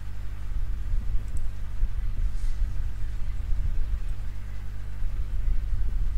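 Steady low rumble with an electrical hum beneath it, picked up by an open microphone.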